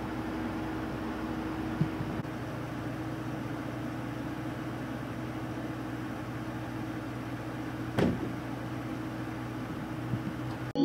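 Steady low hum of an idling vehicle engine over a constant outdoor hiss, with one sharp click about eight seconds in.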